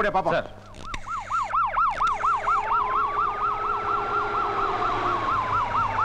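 Vehicle siren with a fast warble, about five cycles a second, starting about a second in and joined near the middle by a slower wail that rises and then falls.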